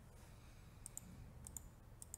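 Faint clicks of a computer mouse: a quick pair just before a second in and another pair about half a second later, stepping an animation forward.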